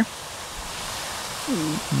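Steady outdoor background hiss with no distinct event, and a brief spoken 'uh' about a second and a half in.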